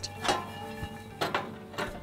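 Pecans rattling in a flame-proof pan shaken over the grill, three short rattles, about a third of a second in, past halfway and near the end, over steady background music.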